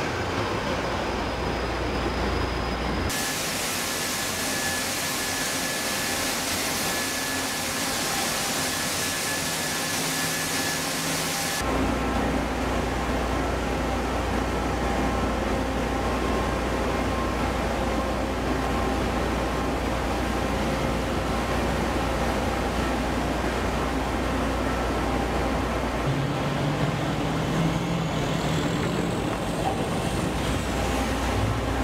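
Steady heavy engine and machinery noise of amphibious assault vehicles. It comes in several clips that change abruptly about 3, 12 and 26 seconds in, with a loud even hiss from about 3 to 12 seconds in.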